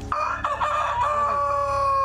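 Rooster crowing: a single crow that begins a moment in and ends on a long, level held note.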